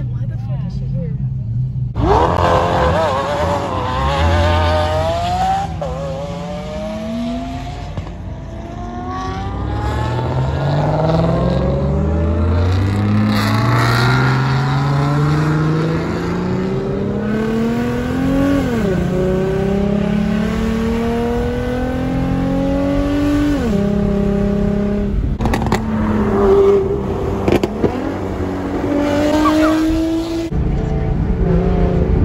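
Car engine accelerating hard through the gears. It revs up suddenly about two seconds in, then its pitch climbs steadily and drops sharply at each of three upshifts, with a few sharp cracks near the end.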